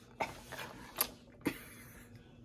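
Plastic CDs clicking against each other as a handful is shuffled, three short sharp clicks about half a second apart.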